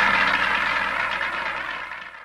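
Audience applauding at the end of a bolero, fading out near the end.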